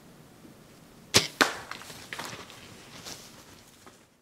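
A bow shot at a white-tailed buck: a sharp snap of the released bowstring about a second in, a second sharp smack a quarter second later as the arrow hits, then irregular crashing and rustling through snowy brush for a couple of seconds as the deer bolts.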